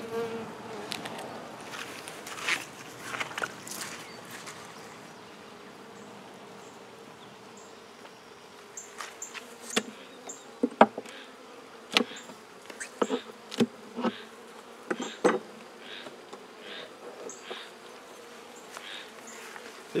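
Honey bees buzzing steadily around an opened hive. Over the second half come a run of sharp knocks and clicks as wooden frames are handled in the hive body.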